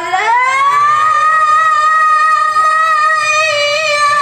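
A boy's high voice reciting the Quran in the melodic tilawah style, amplified through a microphone: the pitch glides up at the start and then holds one long note, wavering slightly near the end.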